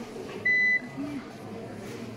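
A single short electronic beep from a piezo buzzer on an Arduino sensor model, lasting about a third of a second, with faint voices behind it.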